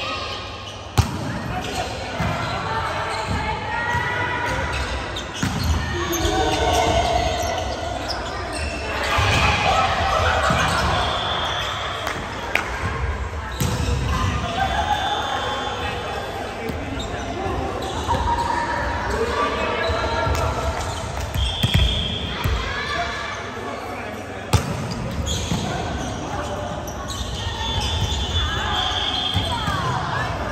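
Volleyballs being struck and bouncing on a wooden gym floor, with a few sharp smacks, the loudest about a second in and near 25 seconds. Players' voices call out throughout, and everything echoes in the large hall.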